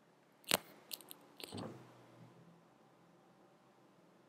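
A sharp click, then a few softer clicks and a brief soft scrape, faint: plastic miniature-game pieces handled on the play mat.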